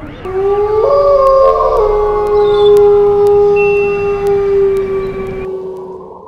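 Dogs howling: several long, overlapping howls at different pitches that start just after the beginning and cut off suddenly about five and a half seconds in.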